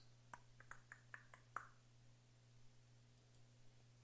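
Near silence: a steady low electrical hum, with a quick run of about eight faint clicks in the first two seconds and a few fainter ticks after.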